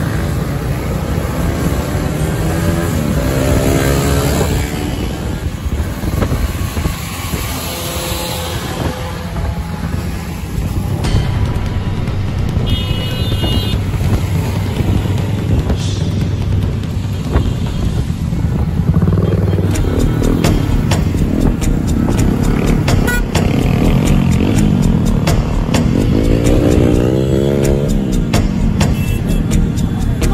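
A pack of motorcycles riding together, several engines running and revving up and down, with music over them that gains a steady beat in the second half.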